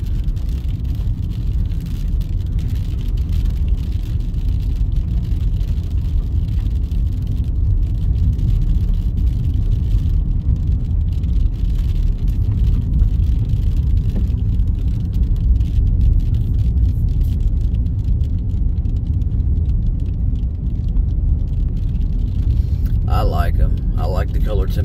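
Car cabin noise while driving on a wet road: a steady low rumble of engine and tyres.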